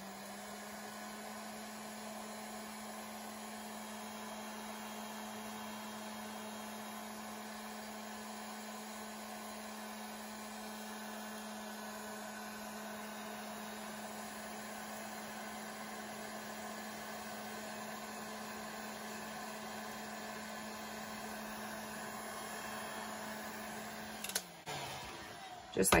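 Handheld electric heat gun running steadily, its fan and motor giving an even hum with airflow noise as it blows hot air onto damp coffee-stained paper to dry it. Near the end it is switched off and the hum drops in pitch as it winds down.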